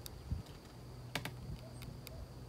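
A few sharp, scattered clicks over a faint steady high tone and a low rumble.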